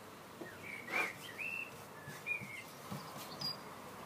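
A handful of short bird chirps, with a soft knock about a second in.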